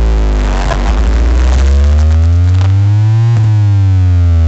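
A huge DJ speaker stack playing a sound-check track very loudly: heavy bass under synth tones that sweep down in pitch, a noisy burst about a second in, then a rising sweep that snaps back and starts falling again near the end.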